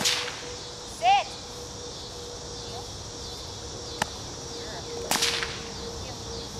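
Sharp whip cracks, the kind a protection-training helper uses to agitate the dog: one at the start and a longer crack about five seconds in. About a second in, a single short, loud dog bark.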